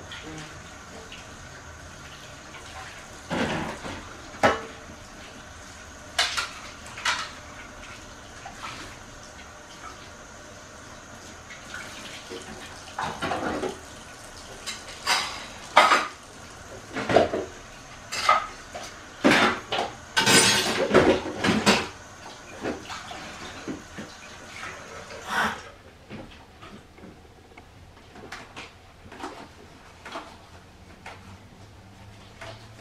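Dishes and cutlery clinking and clattering irregularly as they are washed by hand in a kitchen sink, with a busier run of clatter about two-thirds of the way through.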